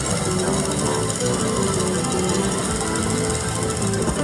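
Lock It Link Piggy Bankin slot machine's bonus sounds: an electronic melody over a rapid, rattling run of ticks as the prize on a symbol counts up.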